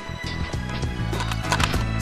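Background music over the quick, irregular footfalls of an athlete sprinting along an indoor track with fire hoses.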